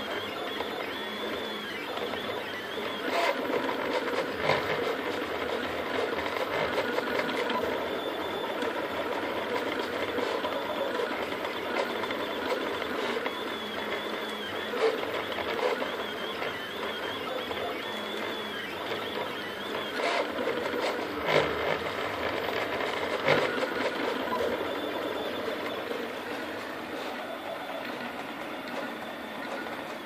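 Picaso 3D Builder FDM printer printing: its stepper motors whine in quick, shifting tones as the print head moves, at times with a high tone that wavers up and down. A few sharp clicks stand out, the loudest about two-thirds of the way through.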